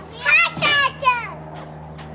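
A young child's high-pitched squeals, two short ones in the first second.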